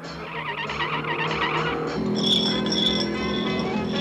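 Cartoon music with a car's tires squealing as it speeds around tight curves.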